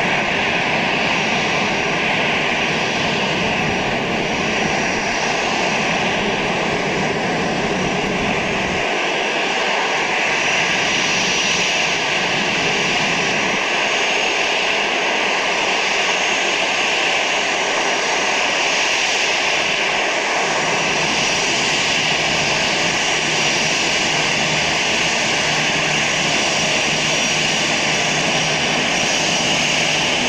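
Twin jet engines of a Swissair Airbus airliner at taxi power as it rolls past, a steady hiss and whine with a thin high tone. The low rumble under it thins out about a third of the way in and comes back about two-thirds in.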